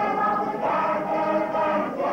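A group of voices singing together in harmony, choir-style, on long held notes that change every half second or so.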